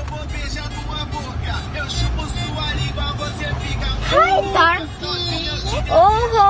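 Steady low rumble of a car, heard from inside the cabin, with a voice heard briefly about four seconds in.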